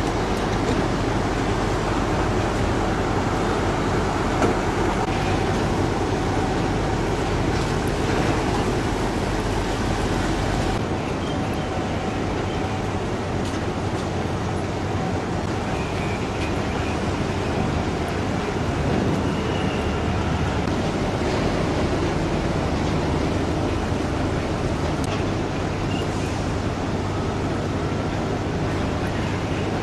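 Steady rumble of engines and machinery around a container ship at the quayside, with a few faint knocks. The low hum under it drops away about eleven seconds in.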